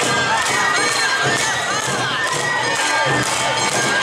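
A group of children's voices shouting Awa Odori dance calls together, many overlapping shouts rising and falling in pitch, with crowd noise around them.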